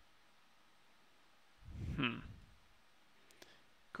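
Quiet room tone, broken about halfway by a brief murmured vocal sound from a man, then a few faint computer mouse clicks shortly before the end.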